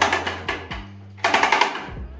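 Ship's engine order telegraph by Nunotani Keiki Seisakusho being swung by its handle, its bell ringing in a quick rattling run of strokes: one burst at the start and another about a second and a quarter in. The ringing is the telegraph signalling an order change to the engine room.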